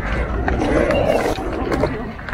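Skateboard wheels rolling over rough concrete: a grainy rumble that swells in the middle, with a few light clicks.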